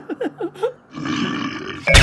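Cartoon squirrel voice giggling nervously in a fast run of short 'heh' syllables, each falling in pitch. This is followed by a raspy growl from a large creature that swells into a loud sudden burst at the very end.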